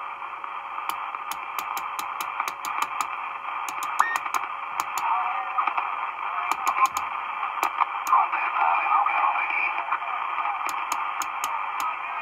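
CB radio receiver hissing with static through its speaker while the channel selector is stepped down through the channels, with short clicks several times a second as it moves. Faint warbling signals come and go in the noise.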